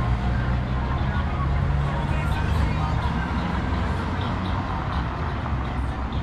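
Road traffic: a steady low engine rumble from cars on the street beside the walkway, with people talking in the background.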